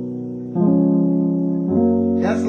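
Digital keyboard in a piano voice playing sustained gospel chords, a three-note right-hand chord over a single left-hand bass note. A held chord gives way to a new chord struck about half a second in, and another comes in with a low bass note near the end.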